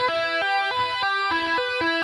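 Electric guitar played with two-hand tapping: a repeating sequence of single notes, about six a second, each note running smoothly into the next.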